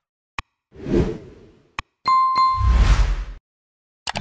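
Sound effects for an animated like-and-subscribe overlay: sharp mouse clicks, two whooshes, and a bell-like ding about two seconds in.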